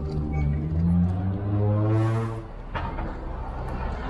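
A vehicle engine in city street traffic, its pitch rising over the first two seconds or so, with a brief hiss a little after two seconds in.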